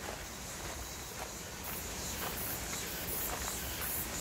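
Footsteps walking along a stony dirt path, soft irregular steps. A high, evenly pulsing buzz joins in the background about one and a half seconds in.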